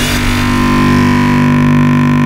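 Electronic bass-music synthesizer drone: a held low chord of steady tones under a hissing noise layer, with no beat.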